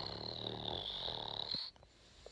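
A drum roll imitated with the mouth: a rapid, rattling trill that cuts off sharply near the end.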